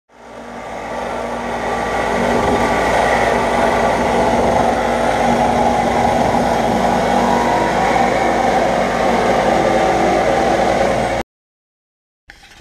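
Car engine running steadily, fading in over the first second or two and cutting off abruptly near the end.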